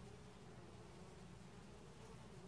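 Faint, steady buzzing of honey bees.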